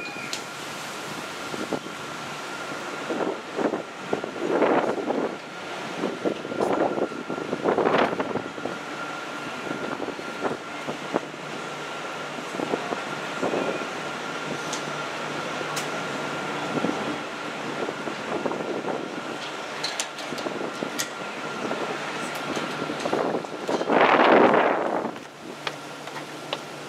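Wind buffeting the microphone in irregular gusts, strongest near the end, over a steady high-pitched whine from the ship's deck machinery.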